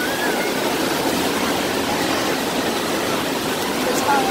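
Steady rush of waves breaking and washing across the shallow end of an indoor wave pool.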